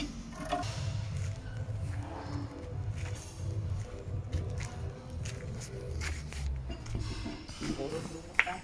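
Indistinct background talk with faint music, and a few light clicks or knocks scattered through it.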